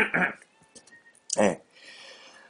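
Speech only: two short spoken bursts with quiet pauses between them.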